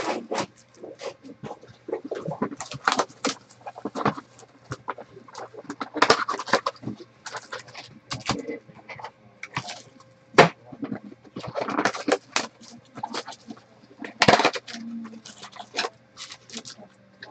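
Foil trading-card pack wrappers crinkling and rustling as the packs are handled and torn open: a run of short, irregular crackles, with a few sharper ones about six, ten and fourteen seconds in.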